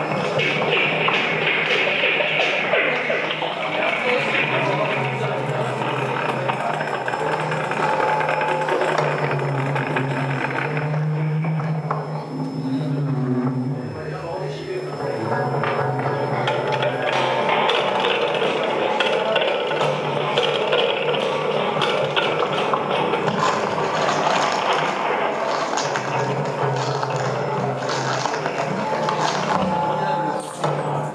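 Live experimental noise music from an amplified prepared wooden box fitted with springs and metal rods, picked up by contact microphones. It is scraped and plucked by hand into a dense, continuous texture of rasping, metallic noise over a low drone, which thins out briefly about halfway through.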